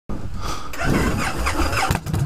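Victory Jackpot motorcycle's V-twin engine running while the bike stands still.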